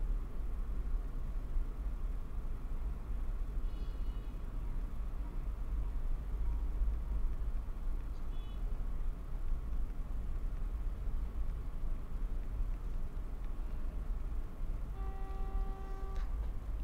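Steady low background hum and rumble of room noise, with a short held tone about a second before the end.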